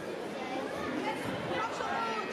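Indistinct chatter of many overlapping voices from people around a competition mat in a sports hall.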